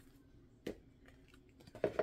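A few light taps and clicks of card decks and a guidebook being handled and set down on a tabletop, the sharpest about a third of the way in and a couple more near the end.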